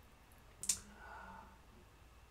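A single sharp click about two-thirds of a second in, followed by a faint brief hum, in a quiet pause.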